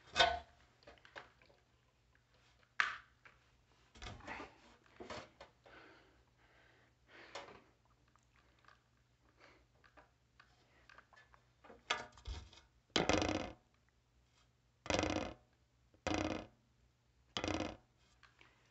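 Plastic smoke alarm being twisted and worked against its ceiling mounting base: irregular clicks, creaks and scrapes. Near the end come several heavier, longer bursts about a second apart. The unit has been on the ceiling about 21 years and is resisting removal.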